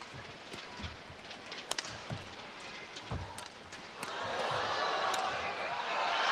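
Sharp racket strikes on a shuttlecock and dull footfalls on the court during a badminton rally. From about four seconds in, the arena crowd cheers and applauds, growing louder, as the rally ends.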